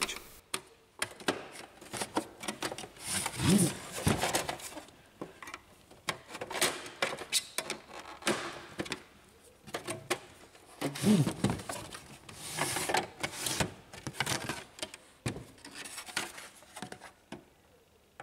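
Plastic side cover of a Samsung ML-1660 laser printer being pried off its hooks with a screwdriver: irregular clicks, taps and scraping of plastic on plastic, with two longer scraping stretches about three and eleven seconds in.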